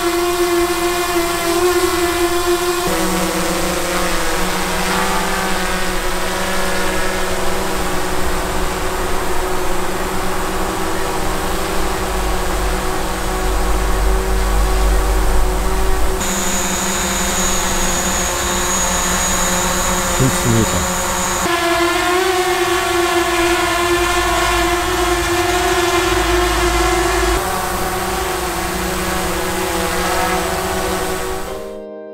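DJI Mavic quadcopter drones (Mavic Air, Mavic Pro and Mavic 2 Zoom) hovering in turn close to the microphone: a loud, steady propeller whine made of several pitched tones. The pitch and tone change suddenly about 3, 16, 21 and 27 seconds in as the next drone is heard, and one section near the middle carries an extra high steady whistle.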